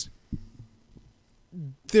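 A pause in two men's studio conversation. A couple of faint low thumps come about a third of a second in, and a short vocal sound near the end comes just before talking resumes.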